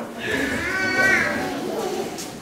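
A child's voice through a microphone in a hall, making drawn-out pitched vocal sounds that slide up and down rather than clear words.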